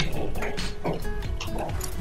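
Background music, with a few sharp clicks of dice tumbling onto a table.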